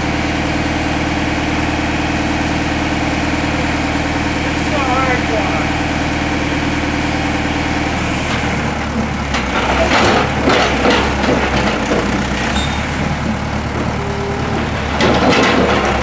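John Deere backhoe loader's engine running steadily. About eight seconds in the engine note changes as the backhoe works the bucket against a large piece of broken concrete slab, and it clatters and scrapes twice, around ten seconds in and again near the end.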